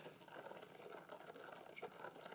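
Faint stirring of young red wine to dissolve freshly added table sugar, a spoon swirling the liquid with a light gritty scraping of undissolved granules at the bottom.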